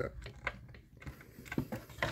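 Small hand screwdriver turning a small screw into the model's bulkhead, giving a few faint, scattered clicks and ticks.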